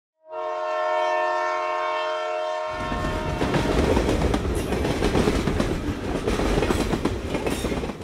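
Locomotive air horn sounding one long steady chord for about three seconds. Then a train rumbles along the track.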